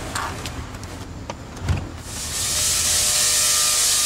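A large Tesla coil starts firing about two seconds in: a loud, steady hiss of high-voltage arcs spraying from its top. Before that there are only a few faint clicks and a low thump.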